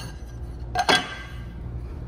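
A light metallic clink about a second in, with a short ring after it: a flat metal compression plate being handled and set against the end of a battery pack.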